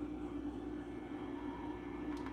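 Hot-air rework gun running, its fan giving a steady whir with air blowing.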